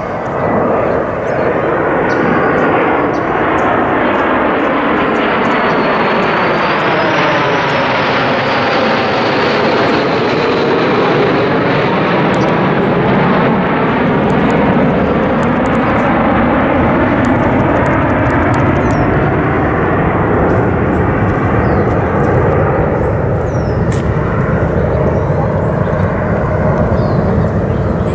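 Two B-1B Lancer bombers flying over, a long, loud jet roar from their four turbofan engines, with a slowly sweeping hollow tone as they pass.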